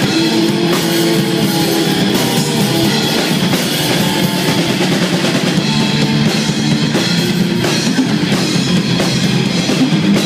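Heavy metal band playing live: distorted electric guitars over a drum kit, loud and unbroken, with very little deep bass in the recording.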